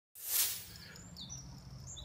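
Small birds chirping in short high notes from about a second in, over a faint steady low hum. A brief rush of noise comes just after the start and is the loudest sound.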